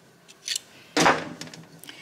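Metal hand tools of a tire plug kit being handled: a couple of light clicks, then a sharper metallic click about a second in.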